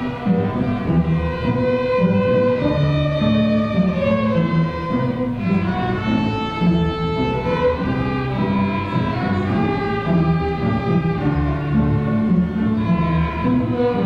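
High school string orchestra playing, violins over cellos and double basses, with bowed notes held and changing about every second.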